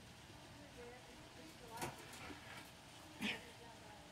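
Mostly quiet, with two brief faint straining sounds from men locked in an arm-wrestling match, just under two seconds in and again a little after three seconds.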